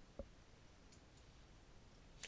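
Near silence: room tone, with a single soft click just after the start, a computer mouse button being clicked to close a window.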